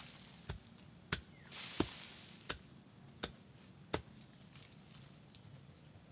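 Six chopping strikes of a hand tool into soil and roots at the base of a small tree, about two every three seconds, stopping about four seconds in. The tree is being dug out by hand.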